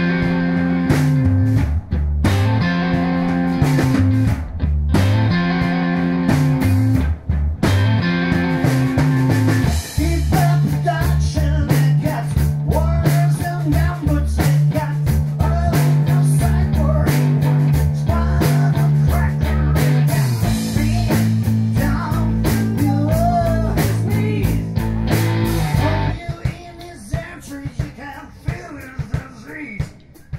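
A live rock band playing loudly: electric guitar, electric bass and drum kit. About 26 seconds in, the music drops to a quieter, sparser passage.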